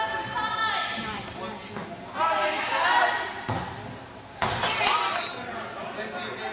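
Spectators' voices and calls echoing in a large indoor soccer hall. A sharp knock comes about three and a half seconds in, and a few more knocks follow about a second later, fitting a soccer ball being kicked.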